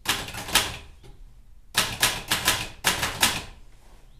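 Old manual typewriter being typed on: keys struck in quick bursts, a cluster at the start and then three short runs in the second half.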